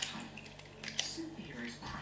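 Small metallic clicks and taps as a disc-detainer pick is handled against a Tech 7 motorbike disc lock and brought to its keyway, the sharpest click about a second in.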